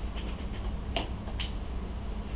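Small handling noises at a fly-tying vise: two brief ticks about a second in as fibres and thread are worked at the hook, over a steady low hum of room tone.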